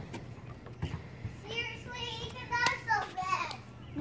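A young child's high-pitched voice calling out, with no clear words, from a little before halfway to near the end. A single sharp knock comes partway through it.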